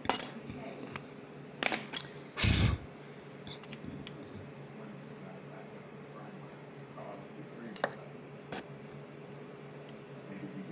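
Light metallic clinks and knocks of thin aluminium bracket strips being handled and set down on a wooden workbench, the loudest knock about two and a half seconds in and a few lighter clicks near the end, over a steady low hum.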